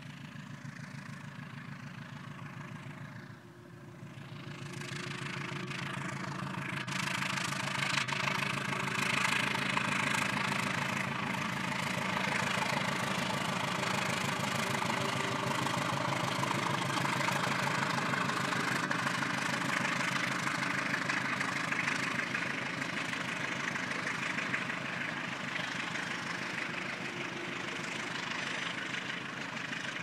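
CC201 diesel-electric locomotive hauling a passenger train past: a steady engine drone under the noise of the wheels on the rails. It swells from about four seconds in and is loudest around eight to ten seconds in.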